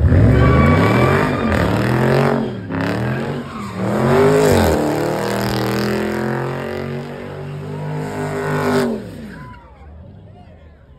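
Car engine revving hard during a burnout, its pitch swinging up and down several times, then held high for a few seconds before it drops away near the end.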